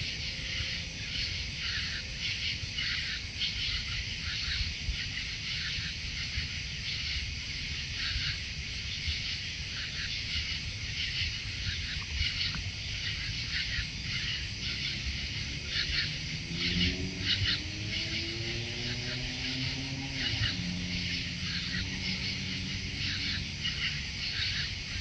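Raccoons eating food off the grass, with irregular crunching and crackling close to the camera throughout. Partway through, a low drawn-out pitched sound rises slowly for several seconds and then falls away.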